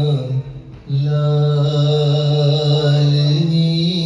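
A man singing a Sufi kalam in a drawn-out, chant-like style. The voice breaks off for about half a second near the start, then holds one long sustained note.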